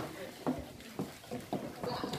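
Indistinct chatter from a group of women in short, broken snatches of voice, with no clear words.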